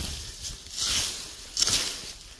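Dry grass and weeds rustling and scraping as a long-handled tool is dragged through them, in two hissy bursts, the second shorter, just after halfway.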